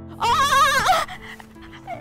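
A woman's tearful, trembling cry, loud and wavering in pitch, lasting under a second near the start, over soft background piano music.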